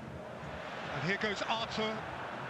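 A man's voice speaking quietly and briefly about a second in, over a steady low background hiss.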